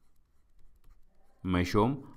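Faint scratching of a stylus writing out words on a tablet, followed about a second and a half in by a man's brief spoken word.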